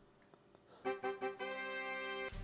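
Fort Brave slot game's bonus jingle: a few short electronic notes and then a held chord, marking bonus symbols that have triggered ten free games. The jingle comes in about a second in, after near silence.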